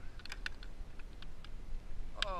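Light clicks and ticks from hands handling fishing gear and a freshly landed fish: a quick run of clicks in the first half second, then a few scattered ones.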